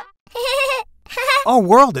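A high, wavering voice-like call lasting about half a second, then a shorter one, and then a high-pitched animated character voice starting to speak near the end.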